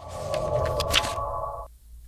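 Title-sequence sound design: a sustained synthesized tone with a low rumble beneath and a papery rustle over it in the first second, like a page turning. It cuts off abruptly near the end.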